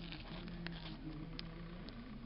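Faint handling sounds of a sheer ribbon bow being untied from a paper pocket flap, soft rustling with a few light ticks.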